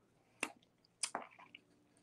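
A few faint, separate wet mouth clicks and lip smacks from someone tasting hot sauce.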